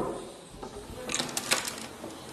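A quick run of small clicks from a door's knob and latch being worked as the door is opened, starting about a second in.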